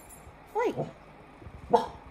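A pet dog gives one short, sharp bark near the end. It is demand barking: the dog wants a bowl that another dog has.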